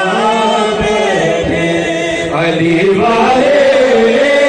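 Male voices chanting a manqabat with no instruments, the lead reciter holding long, wavering notes into a microphone and a second voice joining in.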